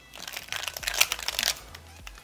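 A Square-1 puzzle being turned quickly through a J/N perm: a rapid run of plastic clicks and clacks as its layers turn and slice, lasting about a second and a half.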